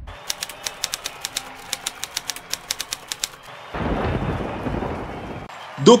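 Typewriter sound effect, a rapid run of key clicks at about six a second for three seconds, followed by a short low rumbling whoosh. A man's voice starts just before the end.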